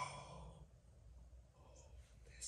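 Near silence: faint room tone with a low steady hum, after a man's voice trails off in the first half second.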